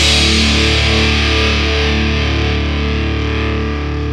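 Distorted electric guitar holding the song's final chord, ringing out and slowly fading with no drums: the end of a hardcore punk song.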